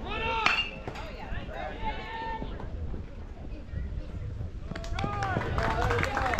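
High-pitched shouts and calls from several people, with a sharp knock about half a second in; from about five seconds in the calls pick up again over a run of quick clicks.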